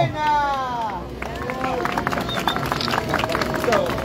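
Scattered hand clapping from a small crowd, with voices murmuring under it, starting about a second in after a man's voice trails off.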